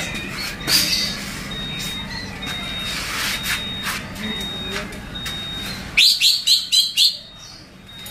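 Birds chirping: a thin high note repeats about once a second. About six seconds in comes a loud, rapid run of about six sharp chirps lasting about a second.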